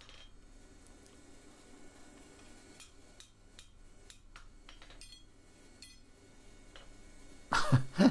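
A few faint, scattered light taps and clicks as a wooden mallet and tongs work a small heart-shaped iron scroll on the anvil horn: gentle corrective taps to true the bend. A much louder stretch begins near the end.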